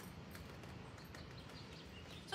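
Quiet background with a steady faint low hum and a few soft taps.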